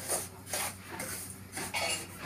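Wooden spatula stirring and scraping dry semolina around a metal kadhai as it is roasted, a run of short, irregular scrapes.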